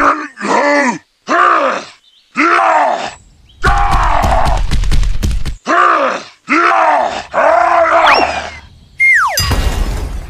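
A voice grunting and groaning with effort, seven or eight straining heaves that each rise and fall in pitch, a cartoonish effort sound for pushing a stuck toy tractor. About nine seconds in, a falling whistle.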